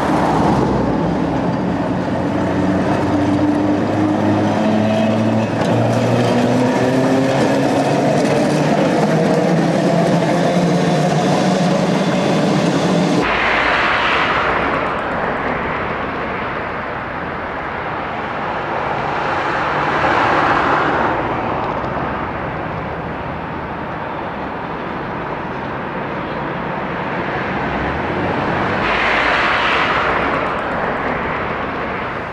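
Electric trams running: for about the first half, a whine of several tones rising in pitch over a rumble. Then the sound changes abruptly to a duller rolling noise that swells and fades three times as trams pass.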